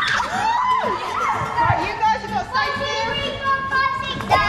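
Children shouting and squealing excitedly while playing, several voices overlapping.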